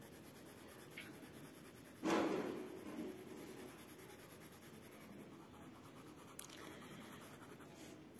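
A colored pencil shading back and forth on a workbook's paper page: soft, scratchy rubbing strokes, louder for about a second some two seconds in.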